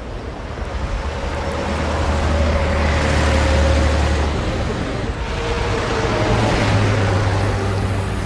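Coach bus driving past on a highway: engine drone and tyre-and-wind rush swell as it approaches, peak around the middle as it passes, then ease off as it pulls away.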